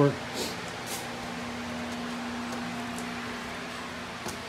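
Steady fan-like hum in a small room, with a low steady tone that fades out a little past three seconds in and a couple of faint clicks in the first second.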